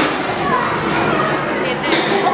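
Children's voices talking and chattering in a large hall.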